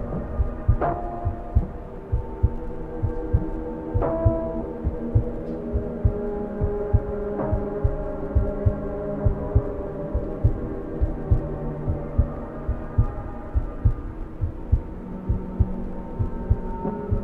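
Ambient soundtrack: low, regular heartbeat-like thumps about two a second under sustained drone tones, with a chime-like strike about a second in, another about four seconds in and a third past seven seconds.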